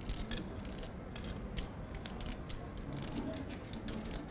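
Poker chips clicking and clattering as players riffle and handle their stacks at the table, a run of short irregular clicks.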